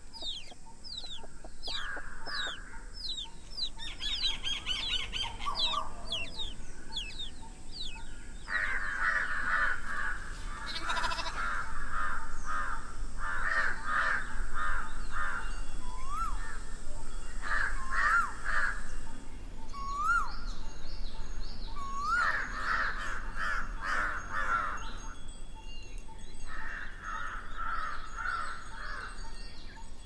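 Several birds calling: quick falling chirps, dense bursts of harsher repeated calls and a run of short rising whistles. A faint thin high tone carries on behind them for the first two-thirds, then stops.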